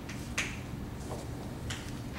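Chalk tapping and scraping on a blackboard as a formula is written: a few short, sharp strokes, the loudest about half a second in, over a low room hum.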